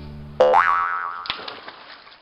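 A cartoon-style "boing" sound effect about half a second in: a sudden springy tone that swoops up and then back down. It comes as the last held chord of organ-like background music dies away, and a single click follows shortly after.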